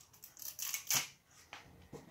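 A plastic fashion doll being handled while its dress is pulled on: a few short rustles and clicks, the loudest about a second in.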